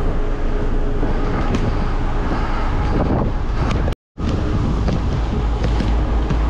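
Wind buffeting the microphone in a steady low rumble, with a few short knocks from a basketball being shot and dribbled on an outdoor court. The sound cuts out completely for a moment about four seconds in.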